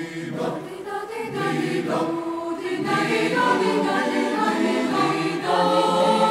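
Background music of choral singing: several voices holding sustained notes that shift slowly and grow louder.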